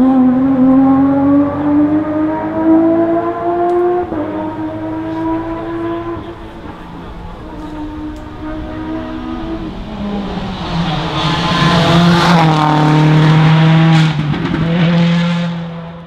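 Porsche 997 GT3 rally car's flat-six engine accelerating hard, its pitch climbing and stepping back at each gear change. It grows louder as the car comes closer, is loudest around twelve to fourteen seconds in, and fades out at the end.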